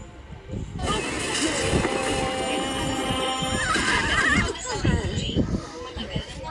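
Cartoon soundtrack with voices over music: a long held, shrill cry, then a high, rapidly wavering cry about four seconds in.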